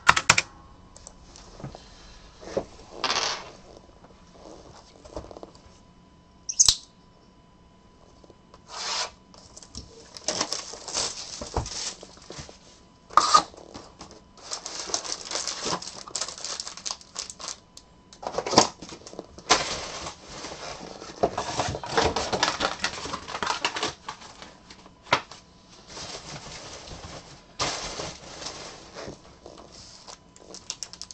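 A cardboard trading-card hobby box being opened and its foil-wrapped card packs handled, crinkling and rustling in irregular bursts with sharp clicks between.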